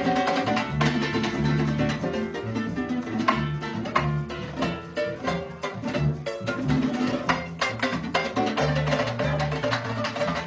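A Venezuelan folk music ensemble playing live: briskly strummed and plucked string instruments over a repeating low bass line in a steady rhythm.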